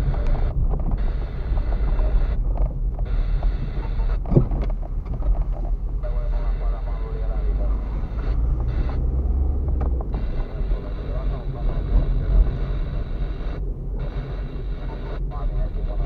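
Car cabin noise picked up by a dashcam while driving slowly on a rough dirt road: a steady low rumble of tyres and suspension, with one sharp knock about four seconds in.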